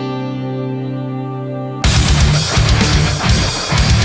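A clean electric guitar rings out with effects. About two seconds in, it cuts abruptly to a loud, high-gain distorted guitar rhythm with drums from a backing track, played through a software amp simulator (an STL Tonehub preset).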